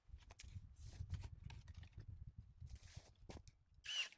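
Pruning shears snipping through apple tree branches: several short, sharp clicks spread across a few seconds, over a low rumble.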